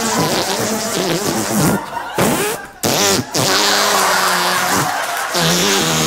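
Long, drawn-out buzzing fart noises, several in a row, broken by short pauses about two and three seconds in, played for laughs on stage.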